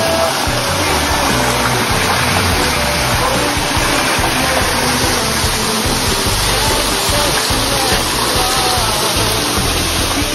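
Steady rushing of water falling down a rock-wall water feature, with music playing underneath.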